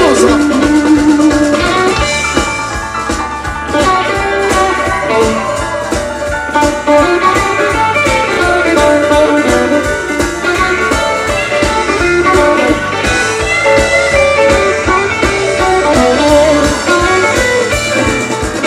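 Live blues band playing an instrumental stretch with no vocals: electric guitar over bass and drums keeping a steady beat.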